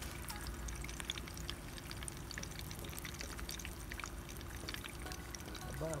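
Faint, irregular crackling of an egg frying in a little oil in a sun-heated frying pan, over a steady low hum.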